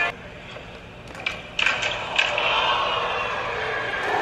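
Skateboard clacking on a concrete floor: a sharp knock at the start, then a few more knocks about a second and a half in. A crowd's noise swells up after them and carries on steadily.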